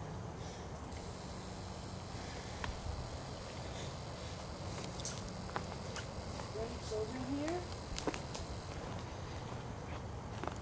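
Quiet night-time outdoor ambience with a steady low rumble and scattered faint clicks. A steady high-pitched whine starts about a second in and stops near the end. Faint distant voices come in about seven seconds in.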